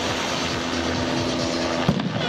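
Steady music and crowd hum over the loudspeakers, then near the end a single sharp bang: the starting shot that sends the triathletes off on the swim.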